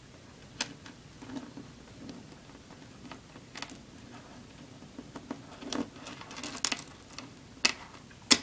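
Light, irregular clicks of plastic pony beads being handled and threaded onto stretchy cord, with a cluster of sharper clicks near the end as beads are picked from a loose pile.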